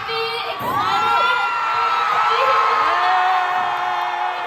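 Audience of fans screaming and cheering, with several long, high-pitched held screams over the crowd noise.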